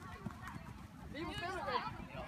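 Many quick footsteps of a group of children jogging on artificial turf, with high voices calling out over them about a second in.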